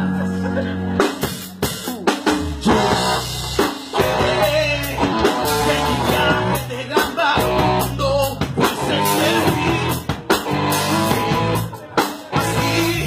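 Live rock band playing: drum kit and electric guitar, with a man singing over them. A held chord opens, and the drums come in about a second in.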